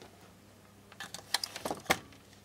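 Light clicks and rustles of thin insulated wires being handled and pushed against plastic contactor housings. The clicks come in a quick cluster from about a second in, the sharpest one just before the end.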